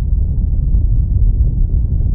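Deep, steady rumble of a cinematic sound effect, loud and mostly bass.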